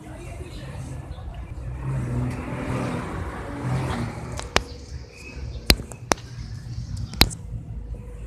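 Low rumbling background noise with four short, sharp clicks in the second half, like small hard objects knocking.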